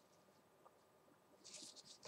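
Near silence: room tone, with a faint short rustle about a second and a half in.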